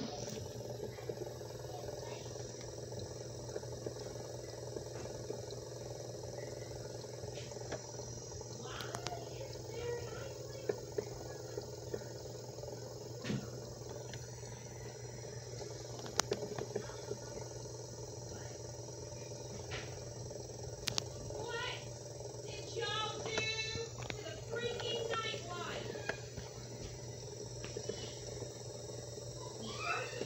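Steady room and TV hum, with a woman's angry raised voice in the background for several seconds late on, and a few faint clicks.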